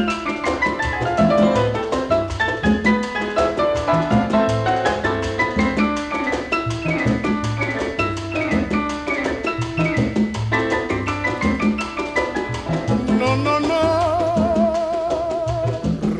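Instrumental passage of a 1951 Afro-Cuban rumba dance-band recording: quick runs of notes over a steady bass and percussion beat. Near the end comes a held note with a wide vibrato.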